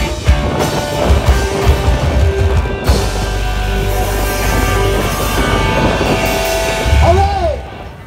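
Live rock band playing amplified music: drum kit, electric bass, electric guitar and congas. It cuts off sharply just before the end.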